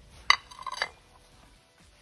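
A porcelain plate and a steel fork clinking against each other and a granite countertop. There is one sharp clink about a third of a second in, followed by a few lighter, briefly ringing clinks.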